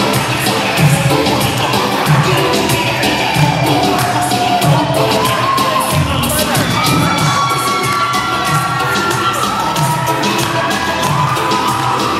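Reggaeton music with a steady beat, with a crowd cheering and shouting over it.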